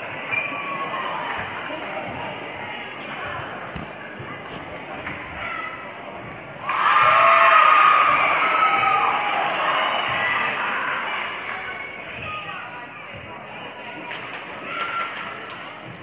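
Gymnasium crowd chatter with a basketball bouncing a few times on the court floor as a player sets up at the free throw line. About seven seconds in the crowd gets suddenly louder, cheering and shouting, the way it does when a free throw goes in, then settles back to chatter.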